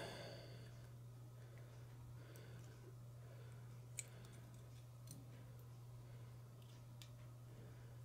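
Near silence over a steady low hum, with a few faint clicks as a jig is worked into a soft-plastic tube bait by hand. One sharper click comes about four seconds in.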